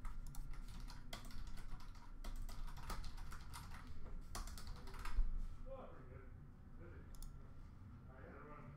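Typing on a computer keyboard: a run of quick key clicks that thins out about five seconds in.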